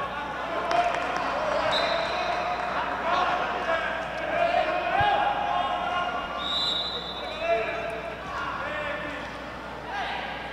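Live sound of a futsal game in an echoing sports hall: players calling out across the court, shoes squeaking briefly on the floor twice, and the ball struck once about five seconds in.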